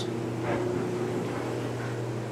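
A steady low hum with a faint even hiss from a household appliance running in the kitchen.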